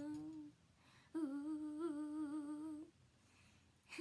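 A girl humming two long held notes, each with a slight waver, the second from about a second in to nearly three seconds; a short falling vocal sound comes at the very end.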